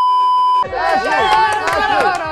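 A steady, high test-pattern beep that cuts off about half a second in, followed by several people shouting and cheering over one another.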